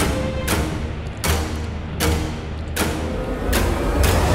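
Background music with a steady beat: a drum hit about every three-quarters of a second over sustained tones.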